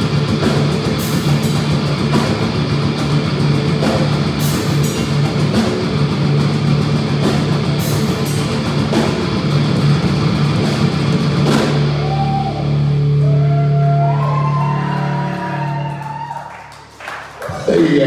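Live thrash metal band playing loud with distorted electric guitars and a drum kit. About twelve seconds in the drumming stops and a final held chord rings on, fading out a few seconds later at the end of the song.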